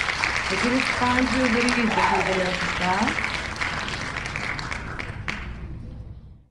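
Recorded applause sound effect from an online name-picker wheel marking the winner of the spin, with a voice heard through it for the first few seconds. The applause fades away steadily toward the end.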